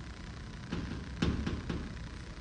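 A few light knocks and taps in quick succession through the middle, typical of a phone being handled against a wooden counter.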